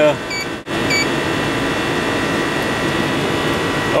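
Air conditioner's outdoor condensing unit running steadily. Two short electronic beeps from the buttons of a digital refrigerant manifold gauge come within the first second.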